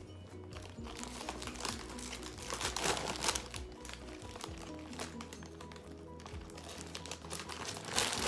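A foil-lined chip bag crinkling and rustling as a hand reaches into it, loudest about three seconds in and again at the end, over background music with a steady bass.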